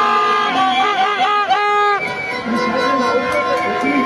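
Several plastic horns (vuvuzela-type) blowing at once in a protest crowd: long held notes at different pitches, with a quick run of short blasts about a second in. Crowd voices underneath.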